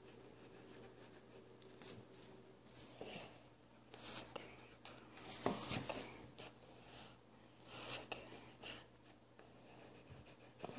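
Pencil scratching on paper in short, irregular strokes, close to the microphone, with louder strokes about four, five and a half, and eight seconds in.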